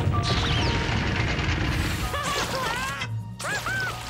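Cartoon sound effect of a stirring volcano rumbling and crashing, with steam hissing from vents, over background music. In the second half come short squeaky cartoon sounds that glide up and down in pitch.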